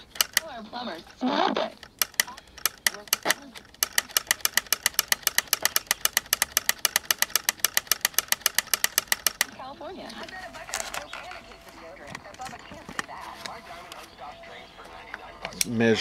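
Power switch on the volume control of a GE P925 transistor radio clicking rapidly on and off, several clicks a second for about seven seconds, as the knob is worked back and forth to free up a bad switch. After that, softer handling noises.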